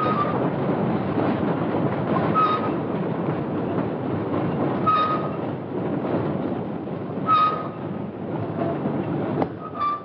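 Train carriage running on the rails: a steady rumble with a short high squeak that comes back about every two and a half seconds.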